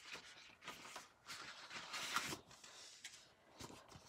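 Paper sticker sheets rustling and sliding as they are handled, in several short uneven patches.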